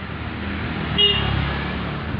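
A motor scooter passing close, its engine rumble rising to a peak about a second in, with a short horn toot at that moment.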